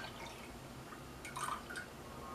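Evaporated milk pouring from a can into a stainless steel pot already holding milk: a faint liquid splashing that tails off into a few drips as the can empties.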